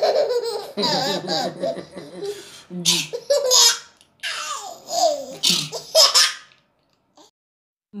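A toddler laughing in a string of bursts with swooping pitch, which stops about six and a half seconds in.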